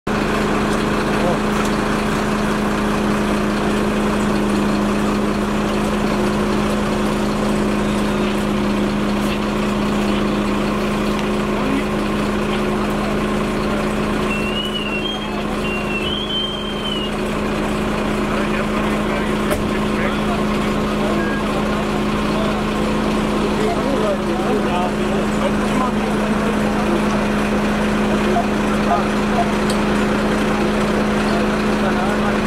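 Fire truck diesel engine running steadily, a constant low hum.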